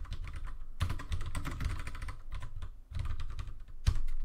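Typing on a computer keyboard: a run of quick keystrokes, a brief pause near three seconds in, then more keys with one heavier stroke just before the end.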